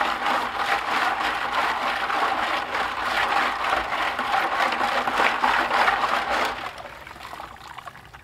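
Gold-stripping solution sloshing and churning in a plastic bucket as a stainless steel mesh basket of scrap gold fingers and pins is jerked rapidly up and down in it, agitating the liquid so the gold strips faster. The churning dies down about six and a half seconds in.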